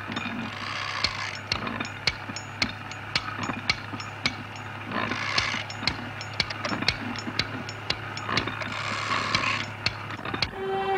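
Sound effect of a gold-extracting machine running: rapid clicking, about three ticks a second, over a steady low hum, with a hiss surging up three times, near the start, about halfway and near the end.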